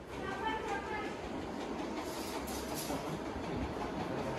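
Faint, distant voices in the first second, over a steady low background noise.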